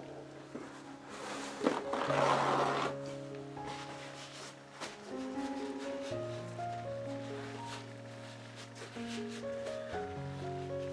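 Background music of soft held notes that change pitch every second or two. A brief rustling noise comes about one to three seconds in.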